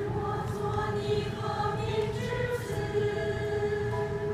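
Mixed church choir of men and women singing a hymn in Chinese, with held notes moving from one to the next.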